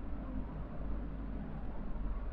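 Steady background hum and hiss of the recording, with no distinct sound events.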